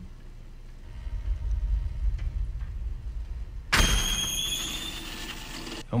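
Eerie sound design from a TV show's soundtrack: a low rumbling drone, then at about four seconds a sudden hissing whoosh with a high steady whine over it, fading slowly before it cuts off suddenly near the end.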